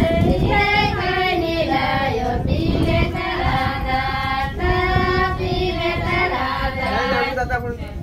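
High women's voices singing a folk song in long held notes, growing quieter near the end.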